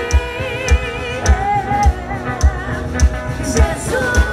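Live Christian worship band playing with a steady kick drum beat, a little under two beats a second, under a singer's held, wavering notes.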